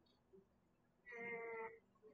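A brief, high-pitched voice holding a single flat vowel sound for under a second, starting about a second in, like a hesitant 'uh' while thinking of the answer.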